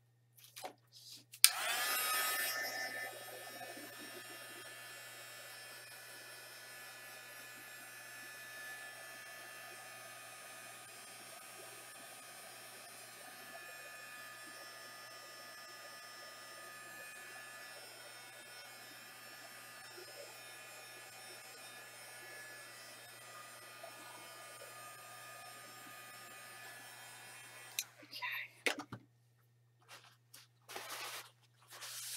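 Handheld craft heat tool switched on about a second and a half in, blowing steadily to dry wet acrylic paint on paper, then switched off near the end. A steady blowing hum with a faint whine; it is louder for its first second or two.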